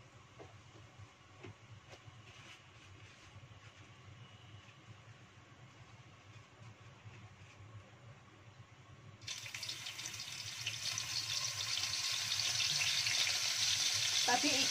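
Salted fish pieces dropped into hot cooking oil in a wok: after a quiet stretch, a loud sizzle starts suddenly about nine seconds in and grows stronger.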